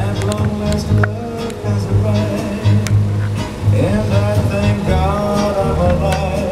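Decap dance organ playing a tune, with a steady bass beat and drum and cymbal hits under the melody.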